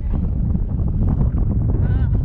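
Wind buffeting the camera microphone in a deep, steady rumble, with a brief high-pitched vocal cry from one of the riders near the end.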